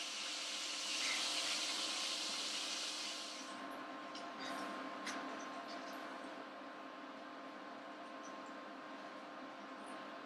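Hot canola oil sizzling in a cast iron skillet as the fried frog legs are lifted out; the sizzle dies down after about three and a half seconds, leaving a few scattered pops and crackles over a faint steady hum.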